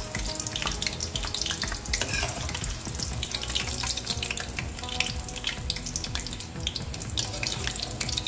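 Thin potato slices frying in hot oil in a pan: a steady sizzle full of small crackles and pops while the crisp, browned chips are lifted out with a slotted skimmer.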